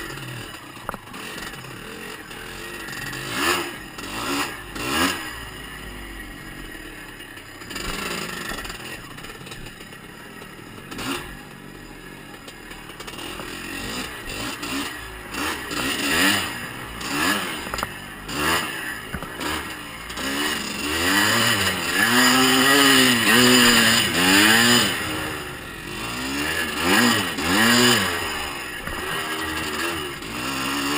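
1982 Husqvarna WR 430's two-stroke single-cylinder engine being ridden off-road, revving up and down with the throttle. There are short bursts of revs a few seconds in, and repeated louder rising-and-falling revs in the second half.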